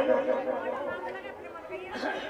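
Speech only: a man's drawn-out phrase trails off, followed by quieter talk and background chatter.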